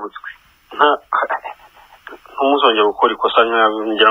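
Speech only: a voice talking in short phrases, heard through a narrow, tinny telephone line.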